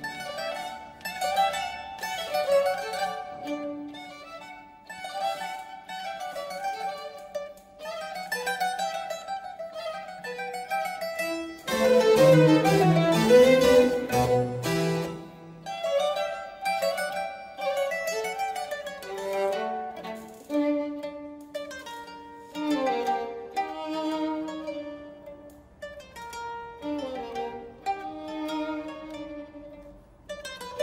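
Mandolin playing quick plucked runs in a Baroque-era concerto Allegro, accompanied by a string quartet. About twelve seconds in, the whole ensemble plays a louder, fuller passage for a few seconds.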